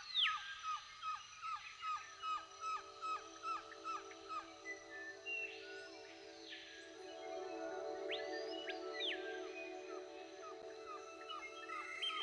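Background music: a quick run of short plucked notes, about three a second, then two swooping glides and held sustained tones in the second half.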